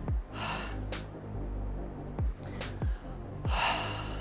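A man breathing hard, two heavy gasping exhalations about half a second in and near the end, as he catches his breath after an exhausting weight set. Background music with a steady beat runs underneath.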